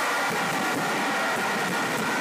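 Steady hiss-like background noise at an even level, with faint high steady tones running through it.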